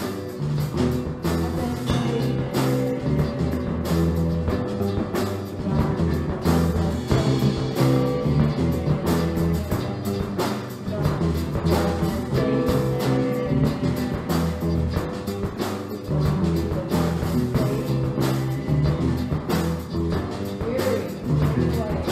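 A small rock band playing live: drum kit, electric guitars, bass and acoustic guitar together in a steady, continuous song.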